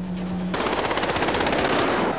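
A steady low hum, then about half a second in a long burst of rapid automatic gunfire lasting well over a second, from a film soundtrack played back through an MPEG-1 Video CD decode.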